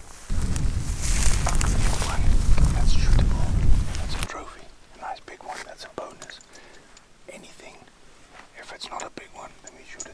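Wind buffeting the microphone with a loud rumble for about four seconds, cutting off suddenly, then men talking quietly in hushed, near-whispered voices.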